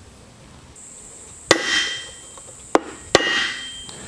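Hammer blows driving a steel bearing race down into a boat-trailer hub: three strikes, the first and last loud and followed by a short metallic ring.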